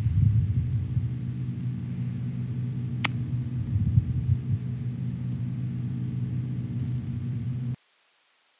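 Steady low electrical hum with faint background hiss, and a single sharp click about three seconds in. The sound cuts off suddenly just before the end.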